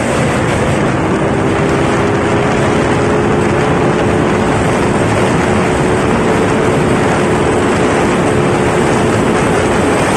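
Yamaha Mio Sporty scooter engine, bored to 160cc with stock head and stock exhaust, running flat out on a top-speed run: a steady high engine drone under heavy wind rush on the microphone. The engine note climbs a little about a second in, then holds level.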